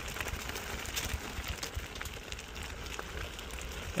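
Off-road electric scooter's tyres rolling down a dry dirt trail, crackling over leaves and loose grit in an irregular patter. A steady low rumble of wind on the microphone runs underneath.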